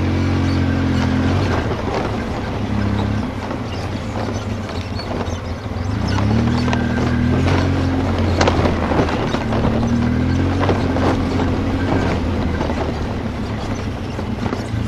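ATV engine pulling along a rough trail. Its pitch climbs three times as the throttle opens, near the start, about halfway and again a few seconds later, and drops back in between. Scattered knocks and rattles come from the machine bouncing over rocks.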